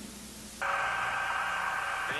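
A steady electronic drone of hiss with several held tones, starting abruptly about half a second in.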